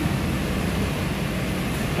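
Steady low rumble of a Range Rover's engine as it creeps forward at walking pace, mixed with street traffic noise.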